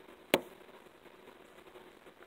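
A single sharp knock about a third of a second in, then only faint handling and room noise.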